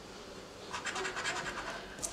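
A coin scraping the coating off a Texas Lottery scratch-off ticket: fairly quiet at first, then a run of rapid short scratching strokes starting a little under a second in.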